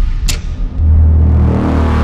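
Sound-design effects for an animated logo reveal: a short, sharp swoosh about a quarter-second in, then a loud, deep bass rumble swelling from about a second in.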